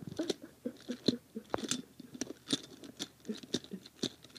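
A person's stifled, breathy giggling in short irregular bursts, mixed with small clicks and rattles from a plastic toy engine being handled.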